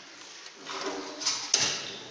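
Single-burner gas stove being lit to test a newly fitted cylinder regulator: gas hisses from about half a second in, with a sharp click about one and a half seconds in as the knob is turned and the burner catches. The burner lighting shows the regulator is passing gas properly.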